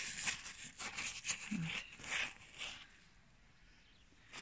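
A frost-covered zucchini leaf rustling and crinkling as fingers rub its iced surface: a run of short, dry crackles that die away about three seconds in.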